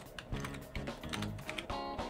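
Computer keyboard typing: a quick run of keystrokes entering one word, over background music.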